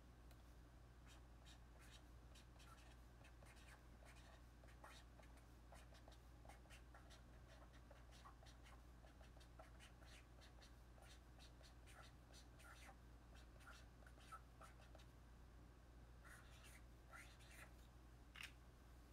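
Faint scratching of a pen writing on a paper tanzaku wish strip, many short strokes in irregular runs, a little louder near the end, over a steady low hum.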